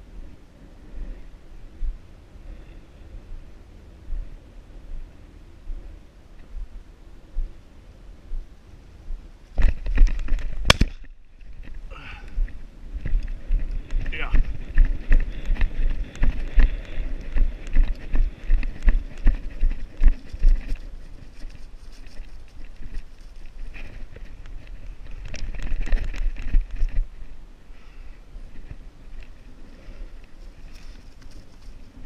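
Footfalls and brushing through dry prairie grass picked up by a body-worn camera, with wind on the microphone. About ten seconds in comes a loud burst ending in a single sharp shotgun shot, followed by several seconds of louder, hurried movement through the grass.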